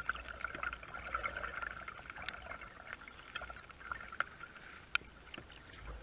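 Rain pattering on the deck of a plastic kayak and on the lake, with small drips and water lapping as the kayak moves. Two sharp clicks stand out, about two and five seconds in.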